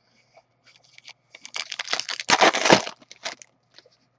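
A hockey-card pack wrapper being torn open and crinkled by hand: a run of crackling rustle that is loudest from about a second and a half to three seconds in, with a few small clicks and rustles around it.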